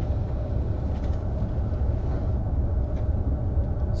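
Steady low rumble of room background noise.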